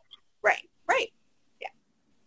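A person's short wordless vocal sounds: two brief voiced syllables about half a second apart, then a faint third near the end.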